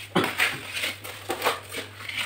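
Hand tool scraping and rubbing over fresh cement mortar on a concrete wall, about six short rasping strokes in quick succession.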